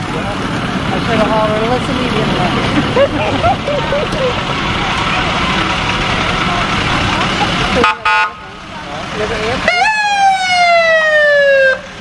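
Fire truck passing amid street and crowd noise, giving a short horn blast about eight seconds in. Then its siren sounds once: a quick rise and a long falling wail, cut off sharply just before the end.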